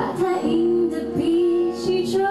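A female singer singing live into a handheld microphone, holding long notes, accompanied by two acoustic guitars.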